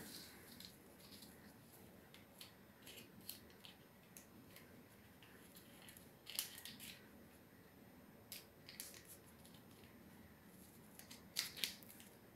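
Faint crinkles and rustles of craft paper being folded and creased by hand, in scattered short bursts, loudest about six seconds in and again near the end.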